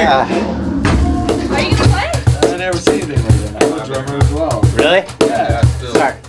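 Drumstick beats making an uneven run of low thumps, with people talking over them.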